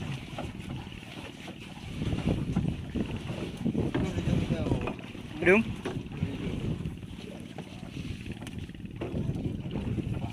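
Wind on the microphone over open water, with people talking low. A short call that rises and falls in pitch comes about halfway through.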